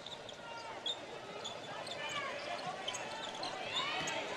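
Basketball shoes squeaking on a hardwood court, several short rising and falling squeals, while a basketball is dribbled.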